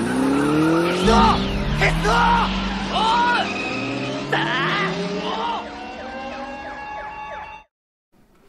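Motorcycle chase soundtrack from an animated film: motorcycle engines revving with a steadily rising pitch, with tyre squeals over them, cutting off suddenly near the end.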